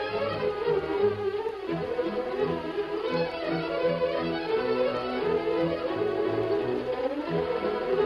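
Orchestral music led by strings, with the low strings playing repeated short notes under a higher melody: the radio show's opening theme music.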